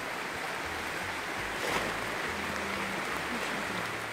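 Steady hiss of rain falling on rainforest foliage, with faint low notes of background music underneath.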